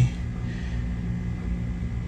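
A steady low hum with a faint hiss over it, unchanging throughout, with no handling clicks or other distinct sounds.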